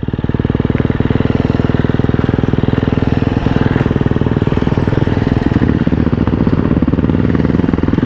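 KTM motocross bike's engine idling steadily, a fast, even firing rhythm with no revving.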